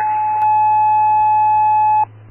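Radio dispatch paging tone heard over a scanner: the long, steady, high-pitched second tone of a two-tone sequential page alerting a unit to call dispatch, with a faint click about half a second in. It cuts off abruptly at the end.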